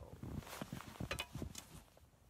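An arrow tossed up onto a wooden tree stand: a quick, irregular run of short knocks and clatters, mixed with the rustle of clothing from the throw.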